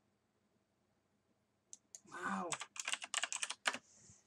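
Computer keyboard typing: a quick run of about eight keystrokes in the second half, preceded by two single key clicks and a brief wordless voice sound.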